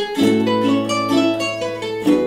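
Several ukuleles played together as an ensemble: quick plucked notes over a held low note.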